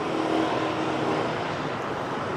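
Street traffic, mostly motorbikes and scooters, running past in a steady hum. One engine note stands out for the first second and a half, then fades into the general traffic noise.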